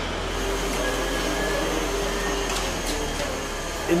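Steady mechanical hum and rushing noise, with a faint steady tone through the middle and a few faint clicks.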